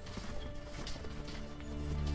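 Faint clip-clop of horse hooves under background music, with sustained musical chords swelling in near the end.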